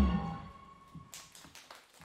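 A pop song's backing track ends, its last note dying away in the first half-second. Then come faint, scattered handclaps from a small audience.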